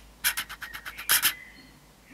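A quick run of short scratching and rustling noises in the first second or so, then quiet.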